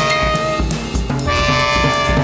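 Instrumental band music: long held horn notes over a drum-kit pulse, with a new held note coming in a little past a second in.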